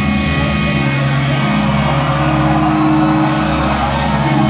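Live rock band's amplified instruments holding a loud, sustained droning chord after the drumming stops, with no drum strokes, over a haze of crowd and hall noise.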